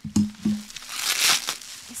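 Bubble wrap crinkling and rustling as it is handled and pulled apart, loudest around the middle, with two dull thumps near the start.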